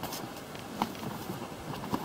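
Light rustling and a couple of soft knocks as a backpack is laid across the bow of an inflatable packraft and its straps are handled.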